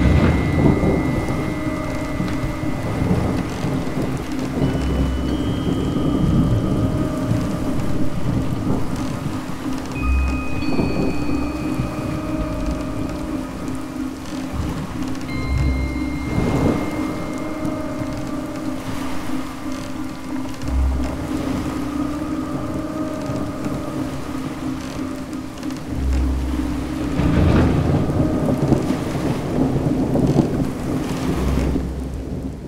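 Steady heavy rain with rolling thunder rumbling every few seconds.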